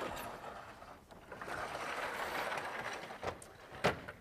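Scratchy strokes of drawing on a lecture board: one stroke fades out about a second in and a longer one follows, then two light taps near the end.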